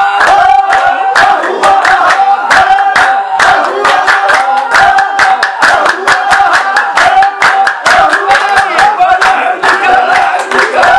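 A group of men clapping their hands on a steady beat while singing or chanting together in loud, held voices.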